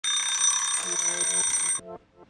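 A loud, high-pitched ringing made of several steady tones over a hiss, which cuts off abruptly just before the end, with a voice underneath.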